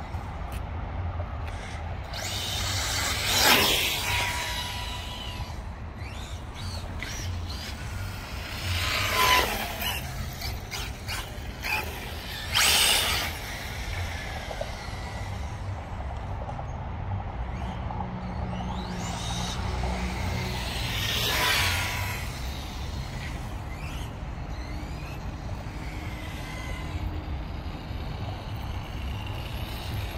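Electric Kyosho GT2-E RC car making fast passes on asphalt. Its motor whine and tyre noise swell and fade four times over a steady low rumble.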